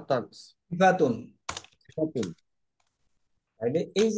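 A man speaking in short, broken phrases, with computer keyboard typing; the voice drops out for about a second past the middle and resumes near the end.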